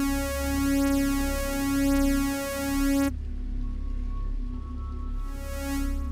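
Native Instruments Massive software synth playing a single held sawtooth note, bright and buzzy with a slight phasing from unison detune. It cuts off abruptly about three seconds in, and softer, duller synth tones carry on over a low steady hum.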